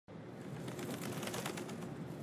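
Outdoor rooftop ambience: birds calling over a steady background hiss.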